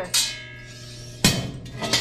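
Metal light-off torch clanking against the boiler burner's steel fittings as it is pushed into the burner port: a ringing metallic clink just after the start, then a louder knock just past a second in.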